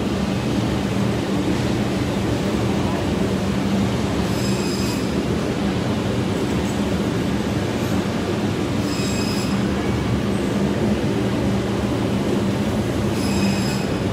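Steady mechanical hum and rushing noise of refrigerated seafood display cases, with a brief faint high-pitched sound about every four to five seconds.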